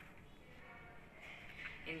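Quiet room with only faint voices in the background, then a child's voice starts reading aloud at the very end.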